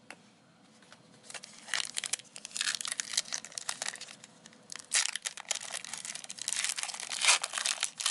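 Crinkly plastic wrapper of a Score 2020 NFL trading-card pack being handled and torn open, in irregular bursts of crackling and tearing that start about a second in.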